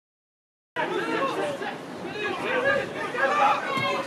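Dead silence for under a second, then several voices starting at once, shouting and talking over one another: players and onlookers at an amateur football match.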